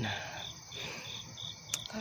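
Crickets chirping steadily, short high chirps about three a second, with one brief click near the end.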